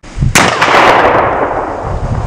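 Scoped rifle shot fired from a bench rest: a sharp crack about a third of a second in, followed by a long rolling echo that slowly fades.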